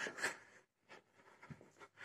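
A short scuffing, rustling noise in the first half second, then a few faint soft clicks in a quiet room. It is handling noise from a phone being carried by hand while walking.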